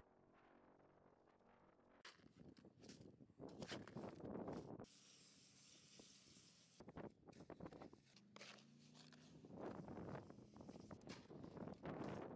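Faint scraping of a hoe and shovel working wet concrete mix in a plastic mixing tub, in two bouts of strokes. In the middle, a steady hiss of water spraying from a hose lasts about two seconds.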